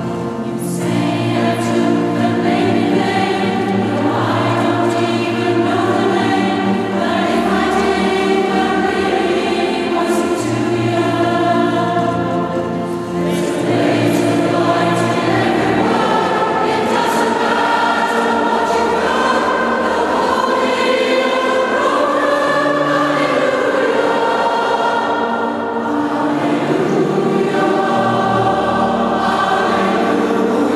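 Large mixed choir of men and women singing in parts with piano accompaniment, sustained and continuous, in a church.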